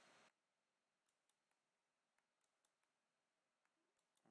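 Near silence, with a few very faint, scattered clicks of a computer mouse.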